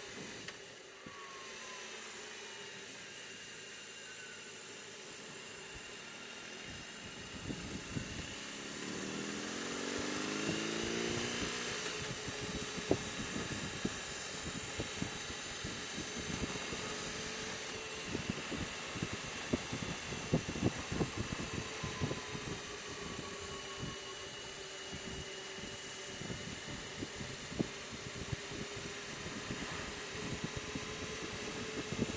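BMW R18 Transcontinental's big boxer twin running under way, its note swelling and shifting in pitch about eight to twelve seconds in. From then on, wind buffets the microphone in rapid low thumps.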